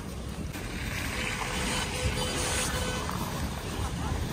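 Bare hands pushing and squishing wet snow slush on a paved street: a steady wet crunching and swishing.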